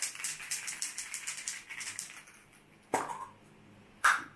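Aerosol spray-paint can being shaken, its mixing ball rattling about five times a second, fading out after about two seconds. A single sharp click follows about three seconds in.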